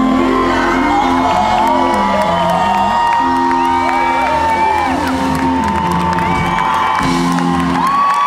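Live soul band music: long held high notes over sustained keyboard chords that change every second or two, with audience members whooping and cheering.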